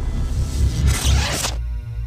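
Intro jingle music with a heavy bass beat and a swoosh effect that swells and cuts off about one and a half seconds in, giving way to a held chord.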